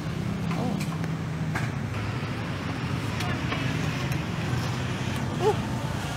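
Busy outdoor market ambience: a steady low motor hum with scattered background voices and small handling clicks.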